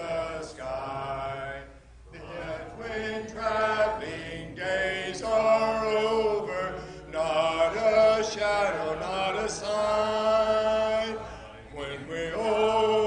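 A cappella congregational hymn singing: many voices holding long sung notes in phrases, with brief breaks between phrases about two seconds in and near the end.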